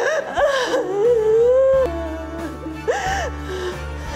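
A woman wailing and sobbing, her cries rising and falling in pitch, with one long held cry about a second in, over background music.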